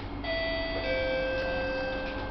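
Two-note falling chime from a Singapore MRT train's public-address system, the tone that signals a next-station announcement is coming. The train's steady running hum continues underneath.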